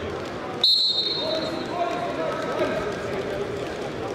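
Referee's whistle blown once, a sudden high, clear note that starts the wrestling bout and fades out over about a second, over a murmur of voices in the hall.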